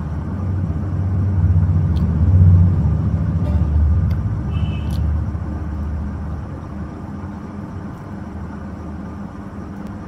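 A low rumble that swells over the first couple of seconds, is loudest about two and a half seconds in, and fades away after about six seconds.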